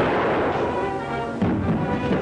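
Revolver shots, one at the very start and another about a second and a half in, over loud film-score music.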